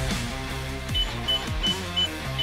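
Short high electronic beeps from a digital safe keypad as a code is keyed in: four identical beeps about a third of a second apart, over background music.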